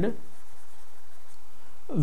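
Stylus writing on a digital pen tablet: faint scratching strokes of the pen tip over a steady background hiss.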